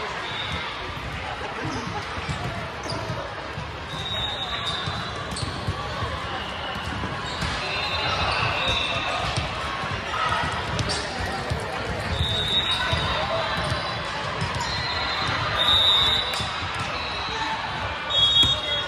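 Busy indoor sports-hall ambience on hardwood courts: a constant hubbub of many voices, with balls bouncing on the floor over and over and short high squeaks now and then.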